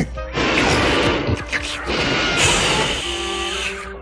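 Cartoon fire-breathing sound effect: a long rushing blast of flame, lasting about three and a half seconds and turning more hissy partway through.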